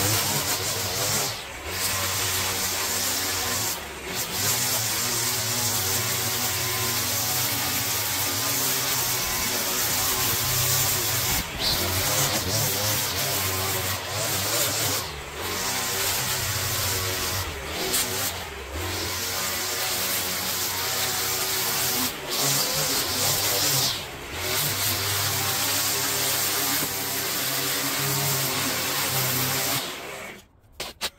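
Line trimmer running at speed while cutting grass along a path edge, with the throttle eased off briefly several times.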